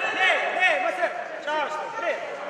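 Several men's voices shouting and calling over one another in a large hall, at a steady, fairly loud level.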